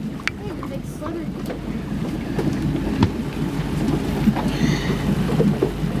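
Wind buffeting the microphone and lake chop slapping against a small fishing boat's hull. A few sharp knocks sound over it.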